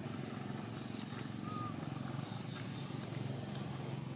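Steady low engine drone of a motor vehicle running nearby, with a brief faint high chirp about a second and a half in.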